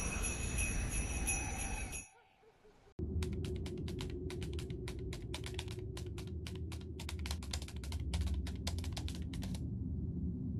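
Jingling sleigh bells with music for about two seconds, cut off by a second of near silence. Then typewriter keys clack in an irregular run of sharp strikes, several a second, over a low steady drone, stopping just before the end.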